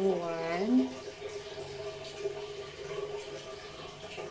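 A woman's voice for under a second at the start, its pitch rising at the end, then a faint steady background of low hum and hiss.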